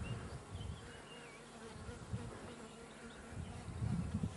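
A faint, steady buzzing hum, with low rumbles on the microphone near the start and again near the end.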